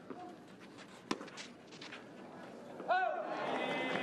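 A tennis ball struck hard by a racket about a second in. About three seconds in the crowd breaks into loud cheering and shouting as the point is won.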